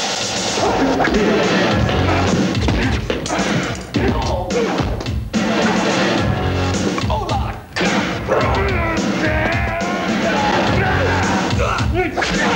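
Loud film-score music running under a fight, with several sharp blows and crashes on top of it.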